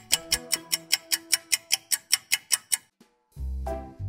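Fast clock-ticking sound effect, about six even ticks a second, as part of a one-minute timer intro; it stops about three seconds in. After a brief silence, upbeat music with a heavy, steady beat starts.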